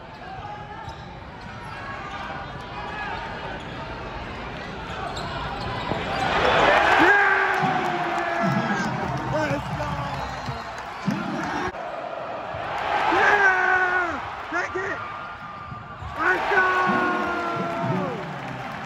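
Basketball game heard from the stands: a ball bouncing on the hardwood court amid arena noise. Shouts and yells from nearby fans swell loudly twice.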